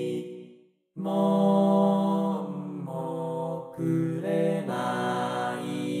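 Four-part male chorus sung by synthesized Vocaloid voices: a held chord fades into a moment of silence, then the voices come back in together with a loud chord about a second in. They move through several chord changes.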